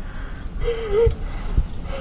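A girl crying quietly: a gasping breath and a short wavering whimper about halfway through, with a couple of soft low thumps after it.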